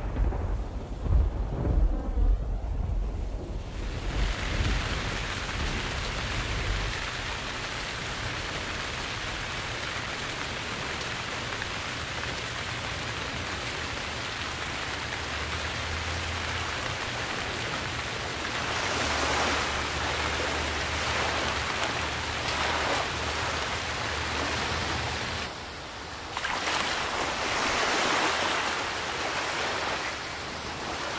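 Stormy seaside ambience: a deep rumble of thunder in the first few seconds, then a steady hiss of rain and surf, with waves washing in louder about two-thirds in and again near the end.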